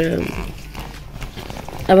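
Faint handling of a cardboard pizza box, a few light taps and rustles, between a woman's words at the start and end.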